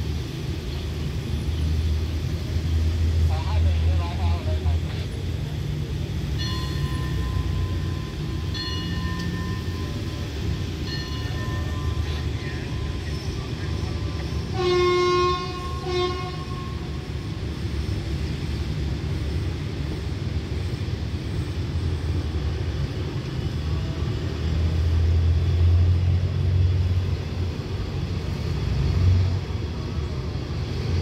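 A diesel-electric train at a station: the Alsthom locomotive's engine rumbles steadily, and about halfway in its horn sounds, one long note and then a short one. Later the engine grows louder and the coaches begin to roll as the train pulls away.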